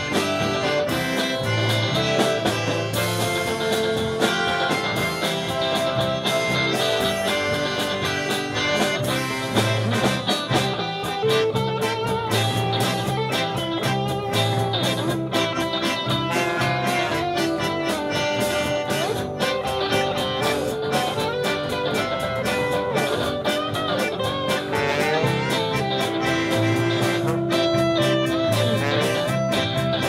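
A live polka band playing with accordion, electric guitars, bass and drums over a steady beat. A trombone and clarinet come in during the second half.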